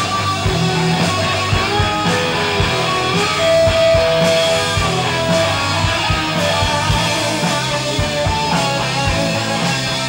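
Live rock band playing loud: electric guitar lead lines with bent and held notes over drums and bass. The longest held note rings out for about a second a little after three seconds in.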